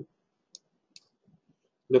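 Two short computer mouse button clicks, about half a second apart, as a shape is dragged into place on screen.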